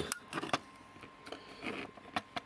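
Handling noise as a telephone cable is handled at a Zoom dial-up modem: a couple of sharp plastic clicks in the first half second, then softer rustling and tapping.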